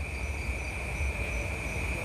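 Crickets trilling in one continuous high-pitched tone, with a low steady rumble underneath.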